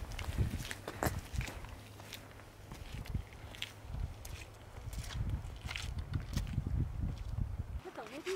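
Footsteps of sneakers crunching on wet gravel and rock, in a series of short, irregular steps over a low rumble.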